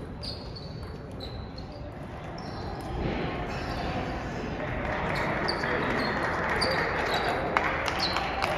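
Table tennis rally: the ball clicking sharply off the paddles and table in quick back-and-forth, about one to two ticks a second, over hall background noise that grows louder about three seconds in.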